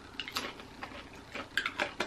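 A few small, irregular clicks and taps, louder near the end, from chewing a mouthful of peach salsa and handling its glass jar.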